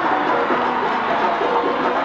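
Diatonic button accordion playing a vallenato melody in quick, stepping notes over a steady percussion backing.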